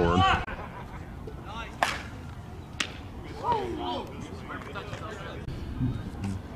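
Open ballfield ambience: two sharp cracks about a second apart, then faint distant voices calling.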